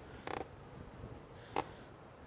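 Large cardboard box being handled and turned over in the hands: a short creak about a third of a second in and a sharp click at about a second and a half, with little else.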